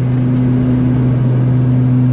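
Steady drone of a Beechcraft King Air's twin turboprop engines and propellers at climb power, heard inside the cockpit: a deep, even hum over a wash of rushing air.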